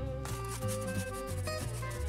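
Background music: a low bass line under short, stepping melody notes.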